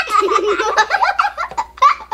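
Young girls laughing loudly, with a loud peak near the end.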